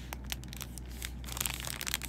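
Crinkling and crackling of snack packaging handled close to the microphone, thickest in the second half.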